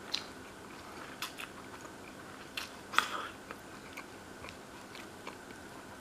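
A person chewing mouthfuls of green tea soba noodles, with scattered small clicks of chopsticks against the ceramic plate; the sharpest click comes about three seconds in.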